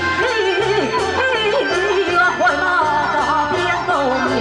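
A Taiwanese opera (gezaixi) aria sung through a microphone, the voice bending and wavering in pitch. Underneath is amplified instrumental accompaniment with a steady beat.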